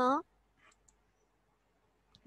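A woman's voice finishing a spoken name, then near silence broken by a faint short sound and a small click just under a second in.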